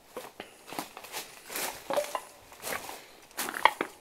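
Footsteps crunching over rubble and broken debris: an irregular run of crunches and scrapes, the sharpest a crunch near the end.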